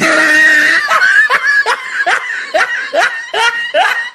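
Loud laughter in a quick run of 'ha' pulses, about three a second, that stops abruptly.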